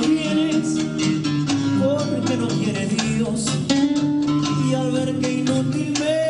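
A man singing a Latin-style song into a handheld microphone over rhythmic backing music.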